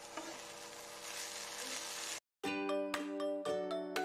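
Okra and potato strips sizzling as they fry in a kadai, for about two seconds. After a short break, light background music with chiming, bell-like notes takes over.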